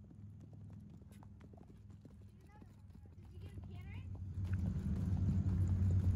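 Hoofbeats of an Icelandic horse being ridden on grass, a steady run of soft strikes. A low hum grows louder about two-thirds of the way in.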